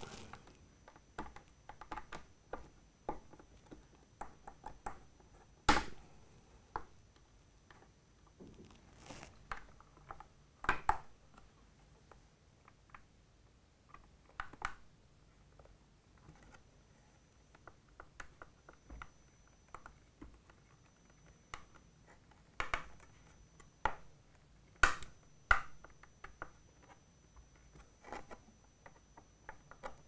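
Hex driver tightening small screws in a 3D printer's acrylic frame: irregular light clicks, taps and scrapes of the tool and the parts being handled, with a few sharper knocks.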